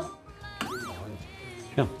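Background music with an added comic sound effect: one quick pitch glide that rises and falls, about half a second in, followed by a short held tone.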